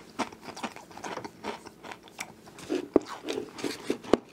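Close-up chewing of a Pringles potato crisp: a run of irregular crisp crunches as it is bitten and chewed, with one sharp click about three seconds in.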